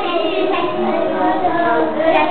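Children singing together, their voices holding and gliding between notes.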